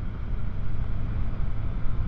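Motorcycle engine running at a steady cruise under wind rush, a steady low drone with no change in pitch.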